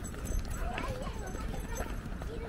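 Footsteps on pavement, a steady run of short knocks, with faint voices of passers-by from about half a second in.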